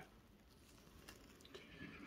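Near silence: faint room tone, with a slight faint sound near the end.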